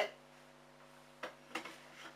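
Low steady mains hum, with a couple of light clicks and a brief rustle from handling about a second and a half in.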